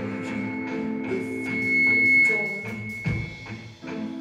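Live rock band playing an instrumental passage on electric guitars, bass guitar and drum kit, with a high note held for about a second near the middle.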